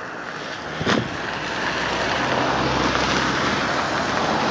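Wind rushing over a phone's microphone, growing louder after about a second, with a single knock near one second in.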